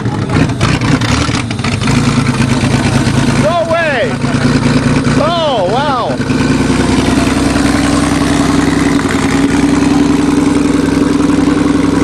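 Chevrolet Cavalier engine running just after starting, its spun rod bearings freshly glued back in and its connecting-rod bolts welded. It runs steadily, then picks up speed about six seconds in and holds there. Voices shout a couple of times.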